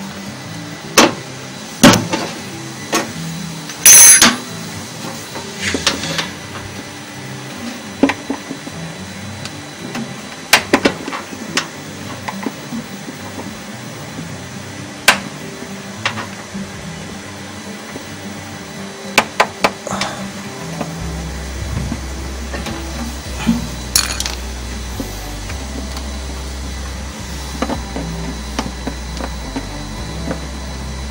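Scattered sharp clicks and knocks as a front-loading washing machine's shock absorber and its plastic mounting pin are handled at the tub mount, with the loudest knock about four seconds in. Background music plays under it, with a bass line coming in past the middle.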